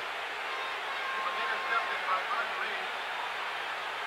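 Steady stadium crowd hubbub from a football crowd, heard through an old TV broadcast's narrow-band sound.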